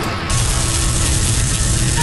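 Loud music with a continuous burst of rapid gunfire from an animated multi-barrel gun, which cuts in about a quarter second in.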